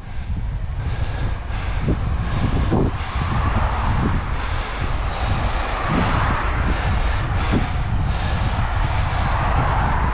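Wind buffeting the microphone of a bike-mounted camera while cycling, a steady rumble with tyre and road noise underneath.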